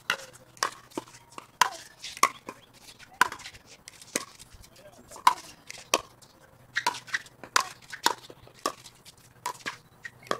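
Pickleball paddles striking a hard plastic ball in a long rally at the net, a sharp pop about every half-second to second. Softer clicks come between the main hits.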